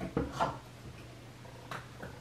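Small objects being handled and set down while makeup is put away: a few light knocks and clatters in the first half-second and another knock near the end, over a low steady hum.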